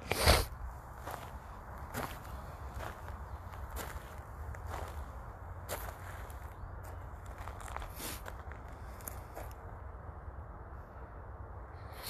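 Footsteps crunching over fire debris of ash, broken tiles and charred metal, roughly one step a second, over a low steady rumble. A louder knock comes just after the start.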